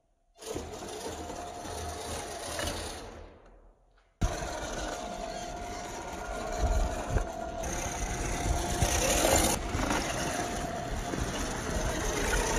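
Brushed 550-size 20-turn electric motor and gear drivetrain of a 1/10 scale RC rock crawler, whining steadily as it crawls. The sound drops out briefly at the start and again just before four seconds in, then comes back suddenly. The second half is louder, with a few knocks.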